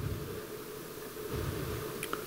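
Room tone of a hall's sound system: a steady hiss with a faint steady hum and no speech.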